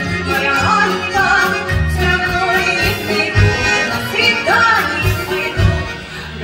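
Live Russian folk-style song: a woman singing with outstretched, gliding phrases over two button accordions, bass guitar and a drum kit keeping a steady beat.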